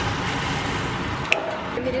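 Water at a rolling boil in a steel pot, a steady bubbling hiss as risotto rice is tipped into it, dropping away after a click about a second and a half in.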